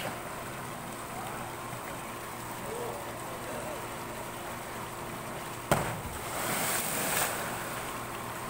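A packed life-raft canister hitting the pool water with one sharp splash near the end, followed by about a second of spraying, churning water as it settles; before that only a steady low background hum.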